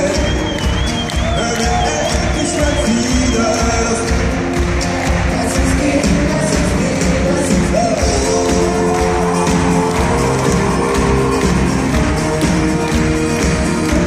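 Live band playing an unplugged concert set: sung vocals over acoustic guitars and a steady low beat, with a high wavering note for the first three seconds or so. The performance is heard from within the crowd in a large arena hall, with audience noise mixed in.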